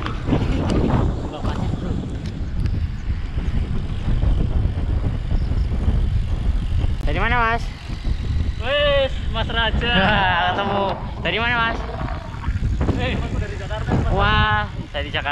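Wind buffeting the microphone of a camera carried on a moving road bike, a steady low rumble. In the second half, riders' voices call out over it several times.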